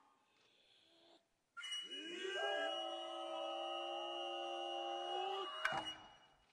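Kotsuzumi shoulder-drum players' long drawn-out vocal call (kakegoe), sliding up in pitch and then held steady for a few seconds with a thin high tone above it, cut off by a single sharp drum strike near the end.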